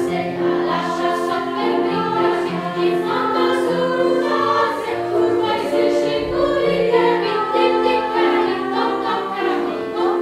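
Children's choir singing in harmony, with piano accompaniment.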